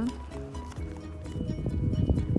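Background music with held notes, joined in the second second by a few soft knocks.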